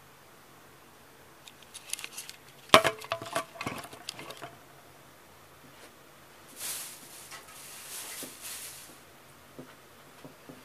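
Camera on a tripod being handled and set down on a cluttered table: a run of clicks and knocks with one sharp knock, then a few seconds of soft rustling as a person moves about the room.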